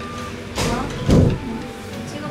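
Background music, with a loud whooshing sweep that comes in about half a second in, falls in pitch and peaks just after a second.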